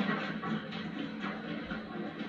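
Film soundtrack playing through a television's speakers, mostly background music, picked up across the room.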